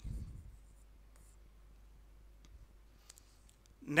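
Faint light scratching and tapping of a stylus writing on the glass screen of an interactive display panel, with a few short clicks about two and a half to three seconds in.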